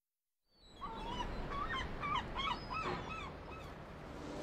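Gulls calling, a quick run of short yelping cries over a low background rumble, starting about a second in after a moment of silence.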